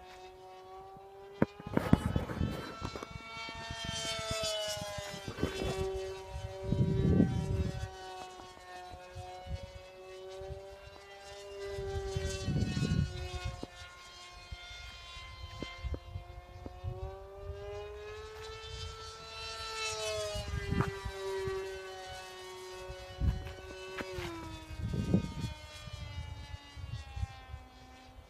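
Electric motor and propeller of a Carbon-Z Scimitar RC plane in flight, a steady high whine that swells twice as the plane passes close and drops in pitch as it goes by near the end. Gusts of wind rumble on the microphone.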